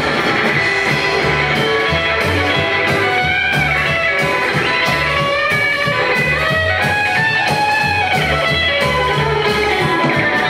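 Live rockabilly band playing an instrumental break with no singing: a hollow-body electric guitar plays the lead over a strummed acoustic guitar, a walking upright bass and drums keeping a steady beat.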